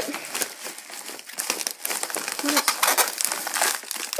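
Clear plastic bag crinkling and rustling as a hand rummages inside it, in a continuous run of irregular crackles.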